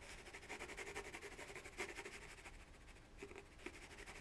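Faint, fast scratching of a water-soluble ink pencil stroked lightly across watercolour paper.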